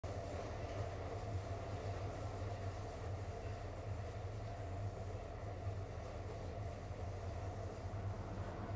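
A steady low rumble, even throughout, with no rhythm, clicks or sudden events.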